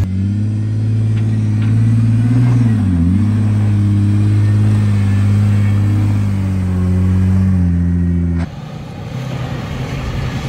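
Jeep Wrangler JK Rubicon's V6 engine pulling steadily as it crawls up a dirt trail, its pitch dipping briefly and recovering about three seconds in. Near the end the sound switches suddenly to the rougher rumble of a vehicle on the move, heard from inside.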